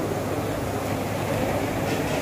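Steady ambient noise of a busy dining hall: a constant hum and whir with faint murmured voices underneath, and a light clink near the end.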